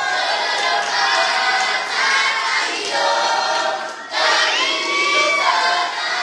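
A large children's choir singing a song together, many voices in unison phrases, with a short break between phrases about four seconds in.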